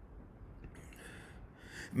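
A man's faint breaths, two short noisy intakes, the second just before he starts to speak.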